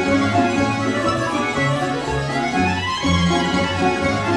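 Instrumental introduction played by a domra sextet, an ensemble of Russian plucked folk lutes, with many notes sounding together over a moving bass line.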